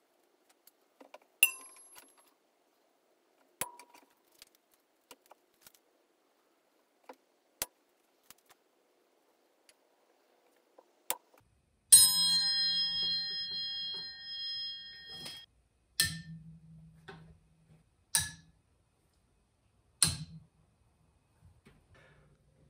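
Faint handling clicks, then about halfway through a bare steel triangle is struck and rings clearly for about three and a half seconds before being stopped short. Three more strikes follow about two seconds apart, each dying out within a fraction of a second: the triangle damped with Damplifier Pro deadening material, standing in for a car's sheet metal.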